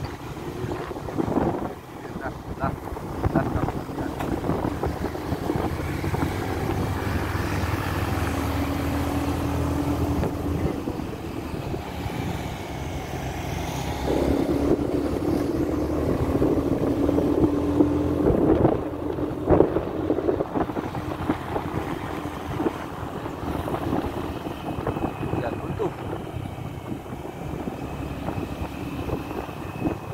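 Motorcycle engine running under way, heard from the rider's seat with wind buffeting the microphone; it gets louder about halfway through as the engine pulls harder.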